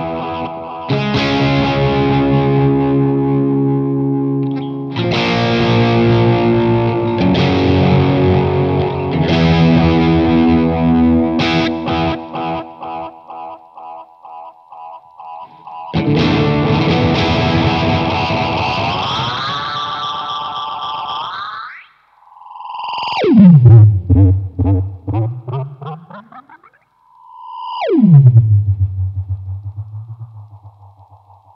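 Distorted electric guitar chords from a Stratocaster, played through a Gokko Mogwai overdrive and a Gokko Magrane analog delay pedal into a Boss Katana amp. Each chord trails off in slightly lo-fi, fading repeats. In the second half the delay's time knob is twisted: the repeats first bend upward in pitch, then twice dive loudly from high to low.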